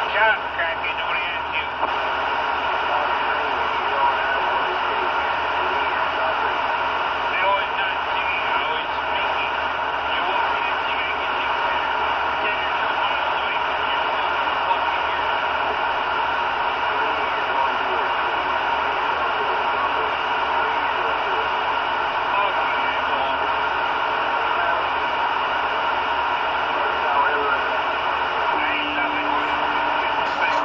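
CB radio receiving on channel 19 (27.185 MHz) with the squelch open: steady static hiss with faint, garbled voices in it. A low steady tone comes in near the end.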